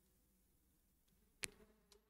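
Near silence: room tone, with one short, sharp click about one and a half seconds in.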